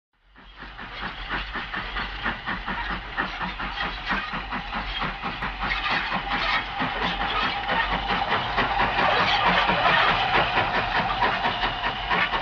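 Steam train running past: a fast, even rhythm of chuffs with steam hiss. It fades in at the start and grows gradually louder.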